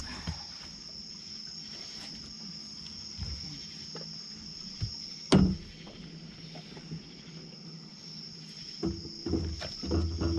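Night insects, crickets, chirring steadily at a high pitch. A single sharp knock sounds about five seconds in, and there are more knocks and thuds from gear being handled on the boat near the end.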